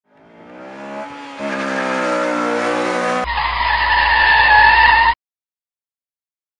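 Car engine fading in and accelerating, with a brief dip about a second in like a gear change, then a sharp switch to tyres squealing with a low rumble for about two seconds before it cuts off abruptly.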